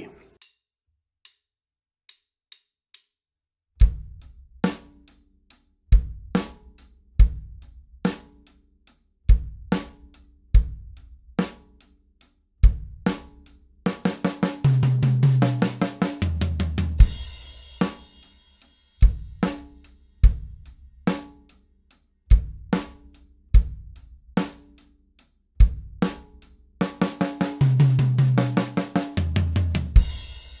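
Drum kit playing a beginner rock groove: hi-hat eighth notes and a snare backbeat, with the bass drum on beat one and the "and" of three. Four faint clicks count it in. It twice breaks into a short fill of lower, ringing drum tones, and the first fill lands on a cymbal crash.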